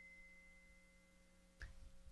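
The fading tail of a bell-like chime: a single high ringing tone dying away into near silence. A brief faint noise comes near the end.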